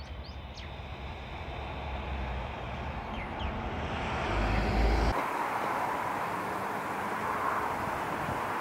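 Outdoor ambience: a few short bird chirps in the first seconds over a rushing noise that grows steadily louder, then changes abruptly about five seconds in to a steady, even rushing noise.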